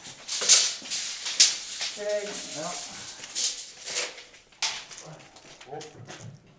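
About five short scrapes and knocks, the loudest near the start, from an empty metal hand truck being moved about on a concrete floor.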